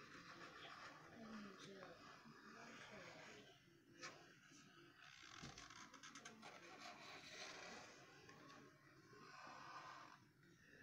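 Near silence: faint room tone with quiet, indistinct mumbling and a single light click about four seconds in.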